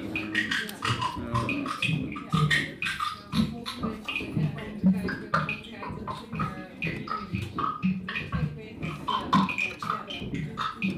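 Live-coded electronic music from TidalCycles: a fast, dense stream of short chopped sample hits and pitched blips in a busy, shifting rhythm.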